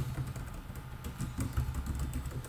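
Typing on a computer keyboard: a quick, irregular run of key clicks over a low, steady hum.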